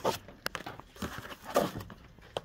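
Shrink-wrapped vinyl LPs being handled and pulled from a cardboard box: a few short plastic rustles and crinkles.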